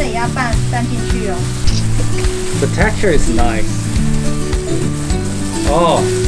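Gloved hands mixing and kneading cooked glutinous rice in bamboo trays: a steady crackly rustle of thin plastic gloves working through the sticky grains, over background music.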